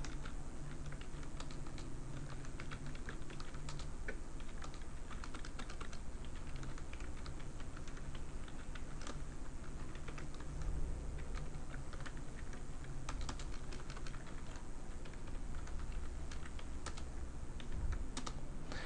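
Computer keyboard being typed on: a quick, irregular run of key clicks, over a steady low hum.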